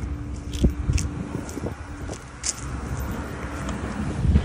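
Footsteps on grass and rustling phone handling over the low rumble of a running engine, with a steady hum that fades out about a second and a half in.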